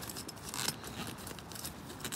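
Faint handling noise of someone shifting about inside a tent: light rustling and clinking, with a brief louder crinkle a little under a second in.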